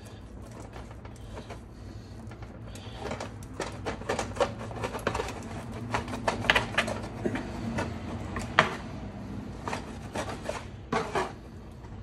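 A knife and metal tongs cutting through and pulling apart a rack of smoked, sauced pork ribs on a tray: a run of clicks, scrapes and taps, the sharpest about halfway through, over a steady low hum.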